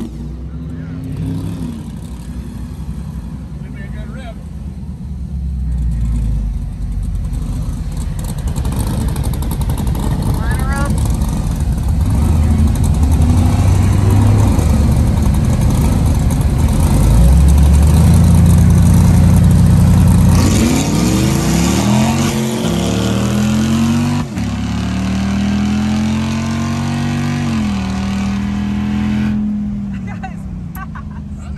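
Drag-racing V8 engines: a hot rod's engine running loud at the start line. Then, heard from inside the cabin, the swapped Gen V L83 V8 of a 1972 Mazda RX-2 pulls hard, its pitch climbing and dropping back at each of several upshifts in the last ten seconds.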